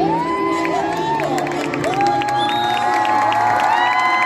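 Audience in a large arena cheering, with overlapping long whoops and yells that rise, hold and fall in pitch, and scattered claps, over a band playing processional music.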